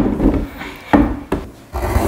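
Pencil scratching on paper fixed to a wooden easel board, in a few short separate strokes.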